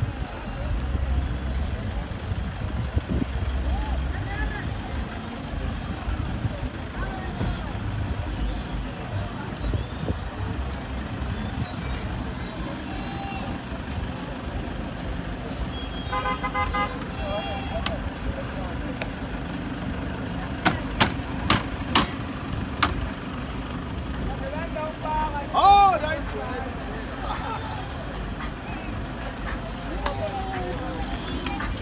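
Toyota minibus taxi engines running amid background crowd voices. A brief horn toot comes about halfway through, then four sharp bangs in quick succession a few seconds later. Near the end there is a short loud sound that bends in pitch.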